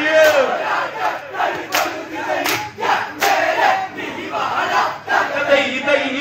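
A group of men shouting a loud chanted chorus together, the call of an Onamkali folk dance song. Three sharp cracks come near the middle.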